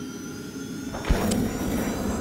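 Intro logo sound effect: a whooshing sweep with steady faint tones under it, and a sharp low thump about a second in.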